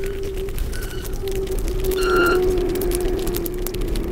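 Close-miked eating sounds, a dense run of small wet clicks and mouth smacks, with a low steady hum held through the middle.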